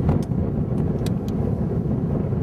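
Wind buffeting the camera's microphone: a loud, steady low rumble, with a few faint sharp clicks over it.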